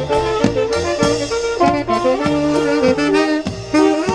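Wedding band playing an upbeat instrumental passage, a lead melody over a steady beat.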